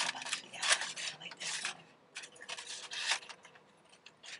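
Close-miked crunchy chewing of a Taco Bell breakfast Crunchwrap: a run of crackly crunches, a short pause about halfway, then more crunching that fades near the end.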